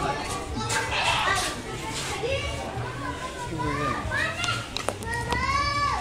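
Many voices of children and adults chattering and calling over one another, with a long, high shout near the end.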